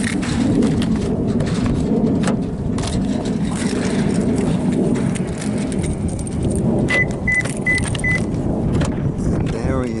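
Car keys jangling over a steady rumble of handling and wind noise at a Toyota Corolla's driver's door. About seven seconds in come four short, evenly spaced high electronic beeps, and the car door is opened near the end.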